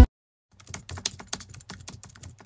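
Computer keyboard typing sound effect: a quick, irregular run of key clicks starting about half a second in.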